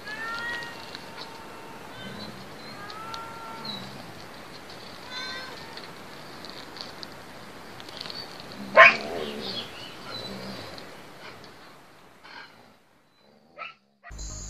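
A cat meowing in long, arching yowls, about three calls in the first six seconds. A sudden, much louder burst comes near nine seconds in, then the sound fades toward the end.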